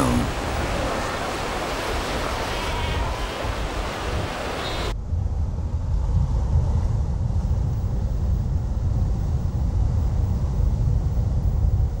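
Sea waves and splashing as sea lions swim at the surface. About five seconds in it cuts abruptly to a muffled, low underwater rumble.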